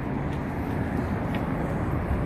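Steady city street traffic noise: a low, even rumble of vehicle engines at an intersection, with a minivan close by.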